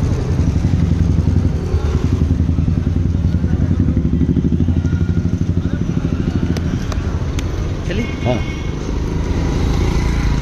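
A small engine running close by with a fast, steady low throb amid street traffic; the throb eases about eight seconds in.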